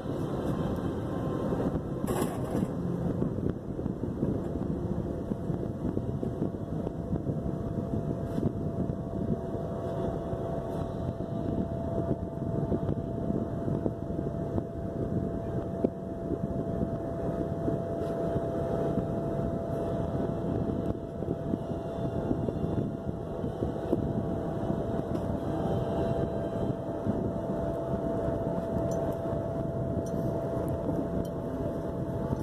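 Electric inflation blower running steadily to keep an inflatable movie screen inflated, a constant drone with a thin steady whine over it.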